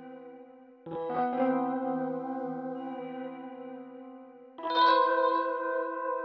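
Instrumental rap beat in E minor in a sparse stretch without drums: echoing, sustained melodic chords are struck anew about a second in and again near the end, and each rings out and slowly fades.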